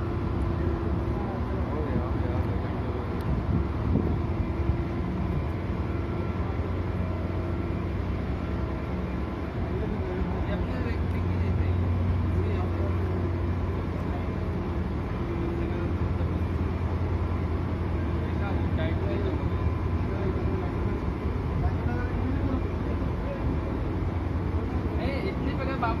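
Steady low drone of a ship's engines and machinery, with faint voices talking now and then.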